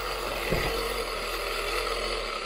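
Scalextric Autostart starter tower's wound-up clockwork timer running down with a steady, horrific mechanical whirr. This run is the countdown before its start light switches to green.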